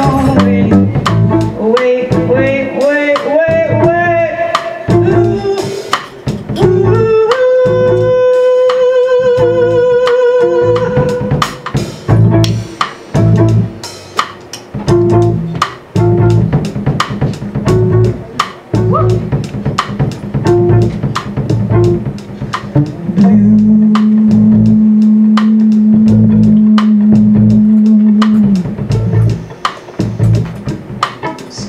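Live jazz quartet playing: female voice, violin, upright double bass and drum kit, with a walking bass and brushed or ridden drum pulse under the melody. A long wavering note is held about a third of the way in, and another steady held note near the end.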